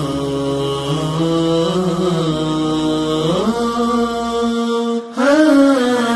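Wordless vocal chant from an Arabic nashid: long held notes that step up and down in pitch between the sung lines. It breaks off briefly about five seconds in, then comes back louder.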